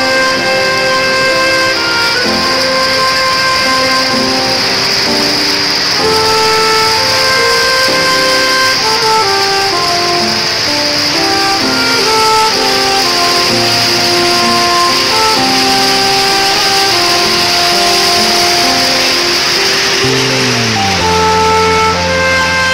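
Instrumental background music: held notes that change every second or so over a steady hiss, with a low note sliding downward near the end.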